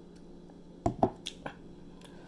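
Plastic drinking tumbler set down on a table: two sharp knocks close together about a second in, followed by two lighter clicks.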